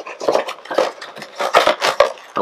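A cardboard Funko Pop box and its plastic bag being handled: a quick, irregular run of small clicks, taps and crinkles.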